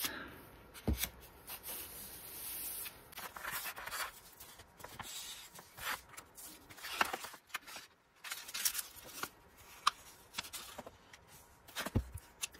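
Paper being handled: sheets rustling, sliding and being pressed down by hand while craft glue is run along their edges, with scattered light taps and scrapes and one sharper knock about a second in.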